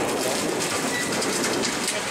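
Airboat running at speed across marsh water: a steady, loud noise from its engine and caged propeller, with rushing air and water.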